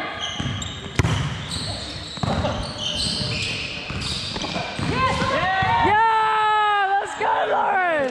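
Indoor volleyball rally in a large echoing gym: a sharp ball hit about a second in and short high sneaker squeaks on the hardwood court. From about five seconds in, players shout and cheer with long drawn-out yells, the loudest part, as the point is won.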